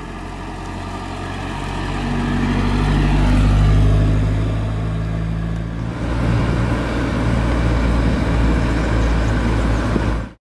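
Rover P6 2000's four-cylinder engine running as the car drives up, the sound growing louder to a peak about four seconds in and easing off. About six seconds in it changes abruptly to a close, steady engine sound under way.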